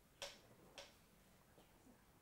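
Near silence: quiet room tone with two faint, short clicks, about a quarter second and about three quarters of a second in.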